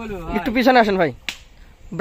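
A person's voice talking, trailing off with a falling pitch about a second in, followed by a single sharp click.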